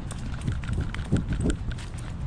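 Rubbing and bumping of a GoPro harness mount on a Staffordshire bull terrier's back as the dog moves and sniffs about. There is a low rumble throughout, light clicks, and a few louder bumps just past the middle.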